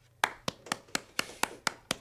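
One person clapping, sharp separate claps about four a second, starting a quarter second in: applause for a song that has just ended.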